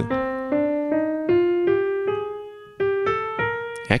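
Digital piano playing the A-sharp (B-flat) major scale upward one note at a time, each note stepping higher, about two to three notes a second, with a short break about three seconds in before the climb continues.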